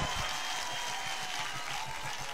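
Faint, steady applause from a crowd.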